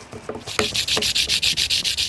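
A small guitar part rubbed briskly back and forth on a sandpaper block by hand, a rapid, even rasping of about seven strokes a second that starts about half a second in.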